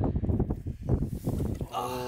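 Gusty wind buffeting the microphone with irregular low rumbles, then near the end a man's long, drawn-out exclamation.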